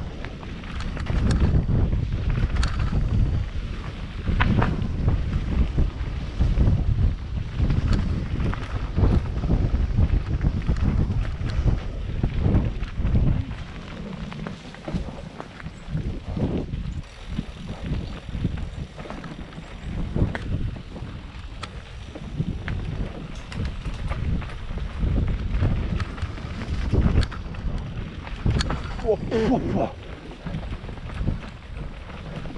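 Wind rushing over a helmet-mounted camera's microphone while riding a mountain bike downhill, with the tyres rolling over dirt and leaf litter and the bike knocking and rattling over bumps. A voice calls out "oh, oh" near the end.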